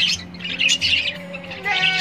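Budgerigars chattering: a steady run of short, high chirps and warbles from several birds at once.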